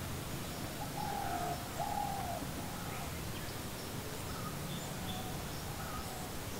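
Outdoor bird ambience: a bird gives two short hooting calls in quick succession about a second in, with a few faint chirps over a faint steady low hum.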